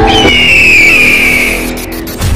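A loud, shrill screech that starts just after the music cuts out and falls slowly in pitch for about a second and a half before fading, like an edited-in tyre-skid sound effect.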